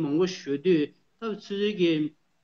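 Speech only: a man talking, with a brief pause about a second in.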